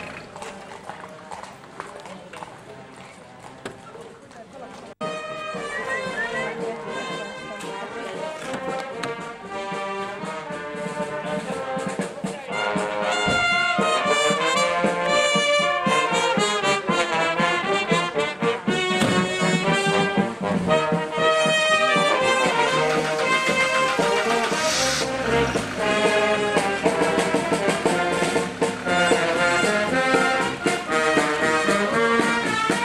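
Brass band with trombones playing on a passing cart, faint at first and growing louder from about five seconds in until it fills the second half.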